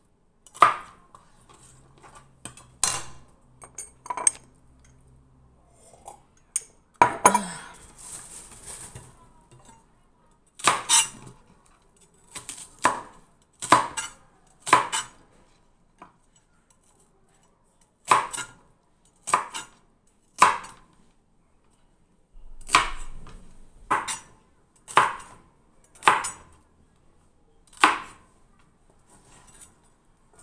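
Kitchen knife cutting through celery stalks onto a cutting board: single sharp chops, one every second or so, with irregular pauses. There is a brief crunchy rustle about seven seconds in.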